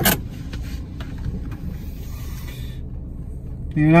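Car engine idling, heard from inside the cabin as a low steady rumble, with a sharp click right at the start.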